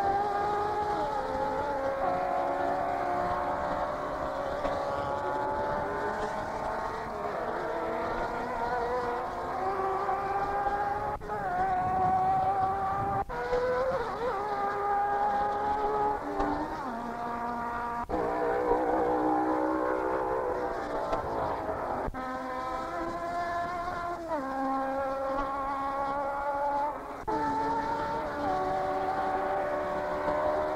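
Racing car engines running at speed on a banked oval, several engines overlapping, their pitch sliding up and down as cars pass and dropping sharply a few times. The sound breaks off abruptly several times.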